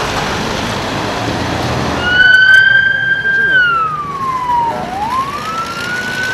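Ambulance siren sounding: it comes in about two seconds in on a high note, holds it, falls slowly, then rises again, in a wail pattern. Before it there is a steady rush of outdoor noise.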